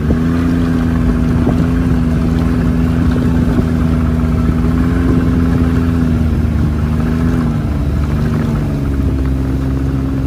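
Snowmobile engine running steadily at cruising speed, its pitch sagging briefly near the end before picking back up.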